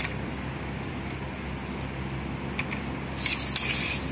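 Fried potato tikkis set down one at a time on a plastic plate, with a light tap at the start and fainter taps in the middle, over a steady low hum. A short rustling hiss comes near the end.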